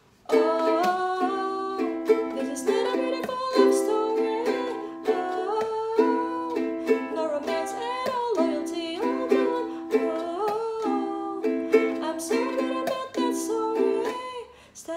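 Wooden ukulele strummed in a steady rhythm, alternating between A minor and C chords, with a woman singing the melody over it; the playing starts a moment in.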